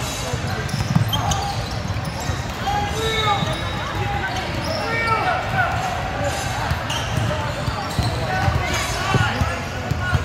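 Basketball bouncing on a hardwood gym floor in scattered thuds, over a steady background of indistinct voices from people around the court.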